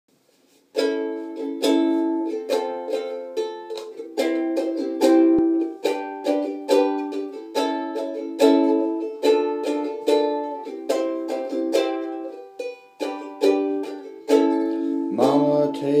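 A ukulele strummed in a steady rhythm of chords, starting about a second in. A voice begins singing near the end.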